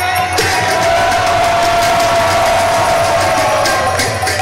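Devotional group kirtan reaching its climax: one voice holds a single long sung note through a microphone, sinking slightly near the end, over a group cheering and metal percussion clashing steadily.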